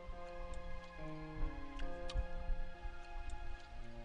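Background dramatic music score: held notes that change in steps, over a light ticking and soft low pulses.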